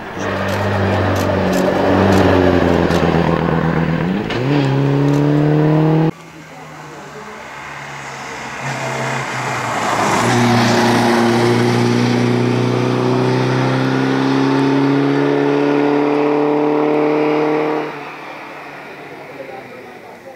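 Skoda Sport racing car's engine under hard acceleration uphill. The revs fall, then pick up sharply about four seconds in, and the sound cuts off abruptly about six seconds in. A second pass follows where the engine pulls steadily higher in pitch for several seconds before cutting off near the end.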